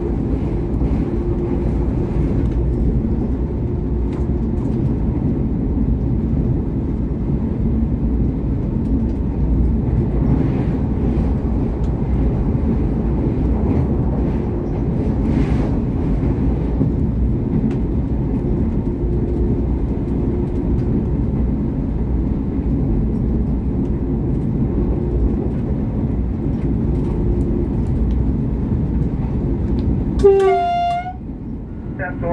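V/Line VLocity diesel railcar running along the line, heard from the driver's cab: a steady engine drone and hum with rail noise.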